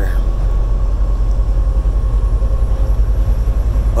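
Cab noise of a semi truck at highway speed: a steady, loud low drone of engine and road rumble, with a faint steady tone riding on top.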